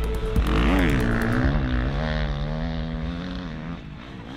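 Motocross bike engine revving up and back down about a second in, then running at a steadier pitch and fading a little near the end.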